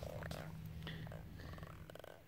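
A channel catfish held out of the water, making a faint, low, steady grunting with a short rasp of rapid clicks near the end.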